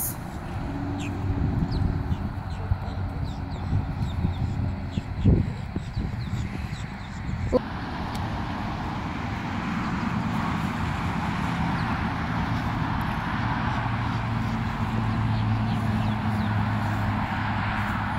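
Low, steady engine hum of a vehicle, with a rushing noise that swells from about halfway through and a few faint clicks early on.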